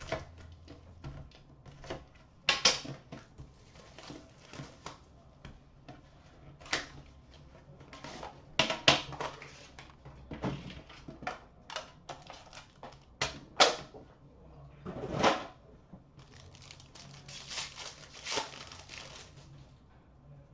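Handling noise from opening an Upper Deck Premier hockey box: irregular clicks and knocks from the box and its metal tin being handled and opened, then a few seconds of rustling and tearing of the wrapping near the end.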